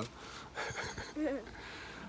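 Quiet outdoor background with a short, faint voice about a second in.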